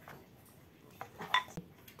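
Two light knocks about a second in, the second a short clink that rings briefly, like a metal spoon against a ceramic bowl.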